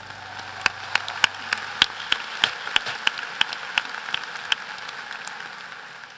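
Audience applauding, with a few loud single claps close to the microphone standing out about three times a second, before the applause dies away near the end.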